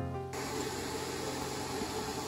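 A background music track stops abruptly just after the start. It gives way to steady room noise: an even hiss with a low hum underneath.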